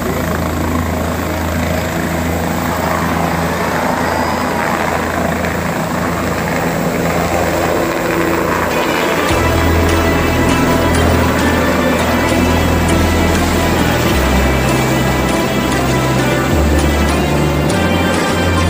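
A helicopter running loud as it lifts off, its rotor and engine giving a steady heavy noise. About halfway, music comes in and plays over it.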